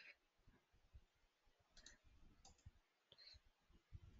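Faint computer-keyboard typing: soft key clicks at an irregular pace.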